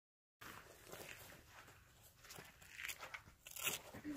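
Gaiters and rain-gear fabric rustling and crinkling as hands work them over wet hiking boots, in a faint run of short, irregular crackly scrapes that grows busier toward the end. It starts abruptly out of dead silence.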